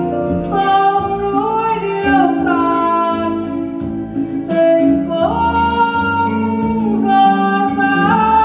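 Music: a sung Vietnamese ballad, the singer holding long notes that slide from one pitch to the next over instrumental accompaniment with a light, steady beat.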